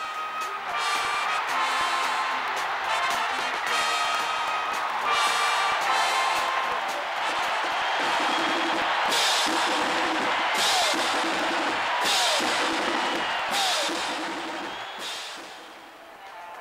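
Marching band playing brass and drums over stadium crowd noise. In the second half, cymbal crashes and drum hits come about every second and a half, and the whole sound fades toward the end.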